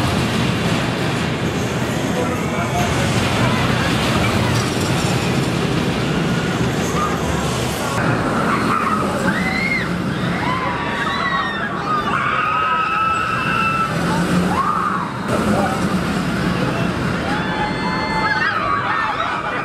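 Intamin Impulse roller coaster train launching out of the station with a steady rush of track and wheel noise and a low hum under it. From about eight seconds in, the train hangs on the vertical spike on its holding brake while riders scream over the continuing ride noise.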